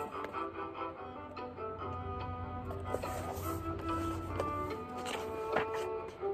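Gentle instrumental background music of short, steady notes at changing pitches, with a brief paper rustle from a large picture book's pages being handled near the end.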